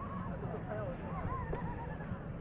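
Crowd chatter on a busy lawn: several overlapping voices, some high and gliding like children calling, with a single sharp click about one and a half seconds in.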